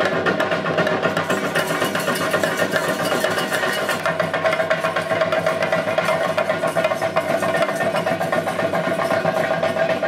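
Chenda drums played in a fast, dense, unbroken stream of strokes, with a steady high tone held over them throughout.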